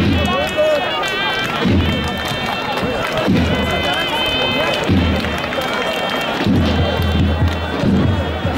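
Davul-zurna band music: a shrill zurna holding long, wavering reed notes over low davul thuds, with crowd voices mixed in.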